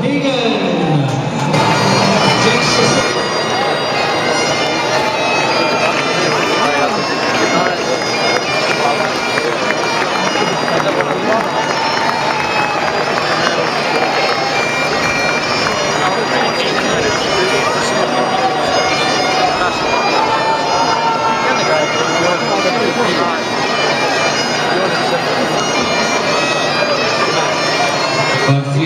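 Bagpipe music: a piped melody over steady drones, running continuously.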